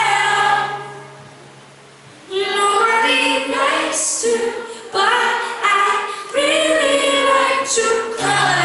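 Two women singing live together in harmony through a PA, with sustained sung phrases. About a second in, the singing fades briefly, then comes back a little after two seconds.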